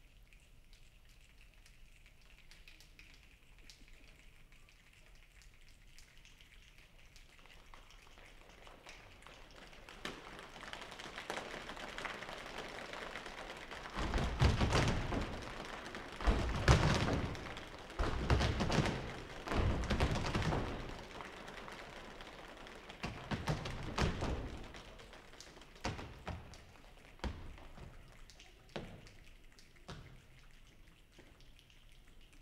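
A choir making a rainstorm with body percussion: faint rubbing and finger snaps swell into heavy thigh slaps and stomps, loudest about halfway through, then die back to scattered snaps like the last drops.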